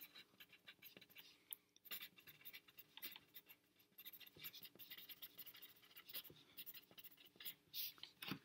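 Faint handwriting on lined loose-leaf paper: quick, irregular scratching strokes of the writing tip across the page, in short runs with brief pauses.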